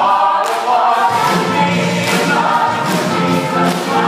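A mixed show choir of men and women singing in harmony in an up-tempo number.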